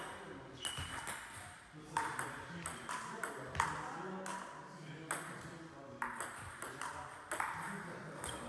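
Table tennis rally: the celluloid-type plastic ball clicks in a steady back-and-forth rhythm as it bounces on the table and is struck by the rackets, a hit or bounce every half second to a second.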